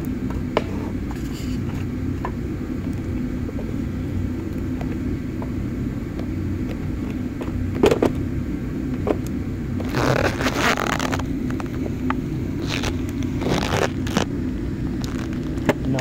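Wooden micrometer cases being handled and shifted about in a drawer: a few sharp knocks, and short rustling, scraping bursts about ten to eleven seconds in and again near fourteen seconds. A steady low hum runs underneath.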